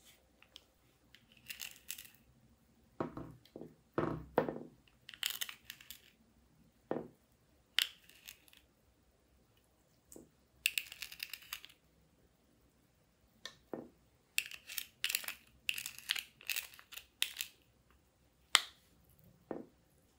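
Handling of makeup containers and a small metal spatula scraping eyeshadow and glitter: a series of short scrapes, taps and clicks with pauses between them. A sharp click near the end is the loudest.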